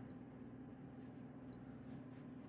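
Faint rustling of hands handling a cotton crochet square while tucking in yarn tails, over a low steady room hum.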